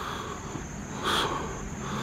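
Steady high-pitched chorus of insects, with a brief soft rush of noise about a second in.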